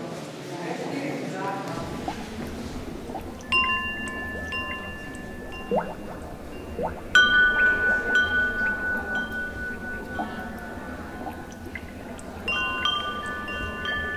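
Metal chimes struck in three bursts a few seconds apart, each sounding a few clear high tones together that ring on and slowly fade; the middle burst is the loudest.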